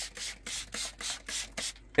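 A hand spray bottle squirted rapidly over and over, about five short hissing sprays a second, misting mushroom grow bags to keep them moist. The spraying stops shortly before the end.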